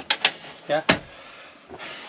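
Hinged wooden seat panel in a motorhome lounge being lowered: a few sharp clicks, then a single solid knock about a second in.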